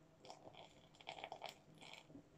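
Faint trickle of water poured from a mug into a small plastic snow-globe dome, splashing in short crackly spurts onto the glitter.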